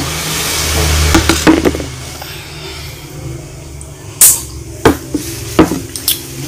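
Drinking glasses knocking as they are set down on a table, three sharp knocks in the second half, over a low rumble that fades out in the first two seconds.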